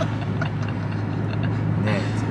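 Steady hum of engine and road noise inside a moving car's cabin.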